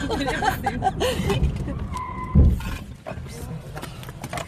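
A car crash heard from inside the car: excited voices, a short steady tone, then a single heavy thud of impact about two and a half seconds in.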